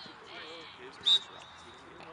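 A referee's whistle gives one short, sharp, high blast about halfway through, with a thinner tail of the same pitch trailing off, over faint distant voices. It is the signal for the set-piece kick to be taken at a ball placed on the turf.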